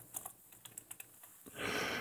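Faint computer keyboard typing: several separate keystrokes as a word is typed into a text field. A short, soft hiss comes near the end.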